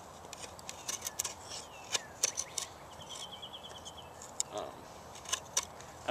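Spyderco Paramilitary 2 folding knife with a full-flat-ground S30V blade cutting into a wooden board under heavy body weight: irregular sharp cracks and snicks as the blade bites into the wood and splits off shavings.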